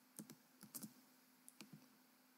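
Faint taps on a computer keyboard, about eight quick clicks in three short groups.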